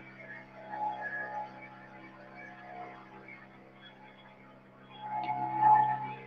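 A small boat's engine running with a steady low drone, growing louder about five seconds in.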